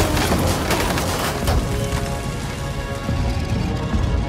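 Loose scrap metal clattering and rattling as a crane's orange-peel grab bites into a scrap heap and lifts out of it, a dense jangle of many small metal pieces; music comes in underneath about halfway.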